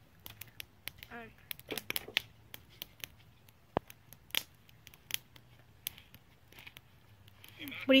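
Wood campfire crackling, with sharp, irregular pops scattered all through.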